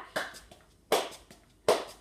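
Three sharp hand claps about 0.8 s apart, one near the start, one about a second in and one near the end, keeping time with kick-ball-change steps. Fainter taps of sneakers on a tile floor come between them.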